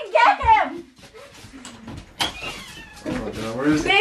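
A woman's high-pitched squeal, then a quieter stretch of rustling with a sharp click about two seconds in, and voices rising again near the end.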